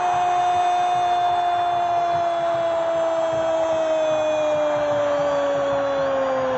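A sports commentator's long, sustained goal cry: one held note, slowly falling in pitch, over the noise of the stadium crowd.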